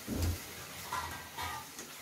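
Wooden spatula stirring thick tomato gravy in a nonstick kadhai. A soft knock comes about a quarter second in, followed by a couple of faint scrapes against the pan.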